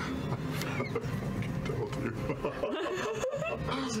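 A group of people laughing together at a table, several voices overlapping, growing fuller in the second half.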